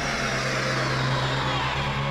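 Cinematic soundtrack: a steady low drone under a faint hissing sweep that falls slowly in pitch.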